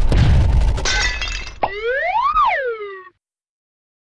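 Stacked title sound effects: the tail of an explosion rumble, a shattering crash about a second in, then a whistle-like tone that glides up and back down. The sound cuts off suddenly about three seconds in.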